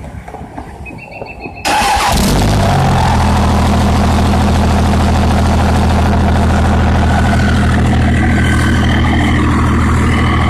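Cummins 5.9 24-valve inline-six turbo diesel starting about two seconds in, then idling steadily. It runs through a 4-inch straight pipe with a 66 mm turbo.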